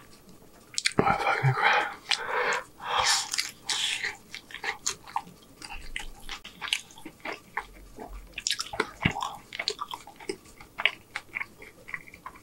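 A person chewing a consommé-dipped birria taco close to the microphone: a few louder, noisy bites in the first four seconds, then quieter clicking mouth sounds of chewing.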